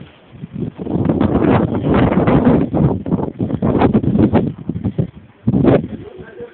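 Loud rough rustling noise right on the camera's microphone, starting just under a second in, dropping away about five seconds in and returning briefly near the end.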